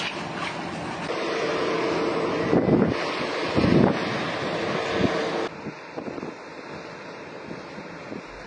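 Wind rushing over the microphone, with a faint steady hum for a few seconds; about five seconds in it drops suddenly to a quieter hiss.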